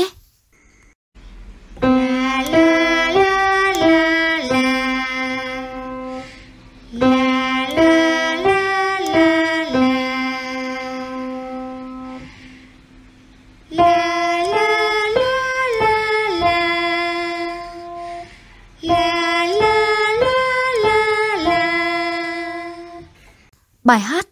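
Vocal warm-up exercise: a voice sings 'là la lá la là', five notes stepping up and back down to a held note, over instrumental accompaniment. The pattern comes four times, and the last two are pitched higher.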